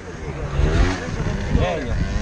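Small motorbike and scooter engines running and revving, with wind rumbling on the microphone and some indistinct voices.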